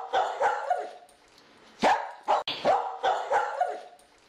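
A dog barking: a quick run of short barks, a pause of nearly a second, then more barks in quick succession.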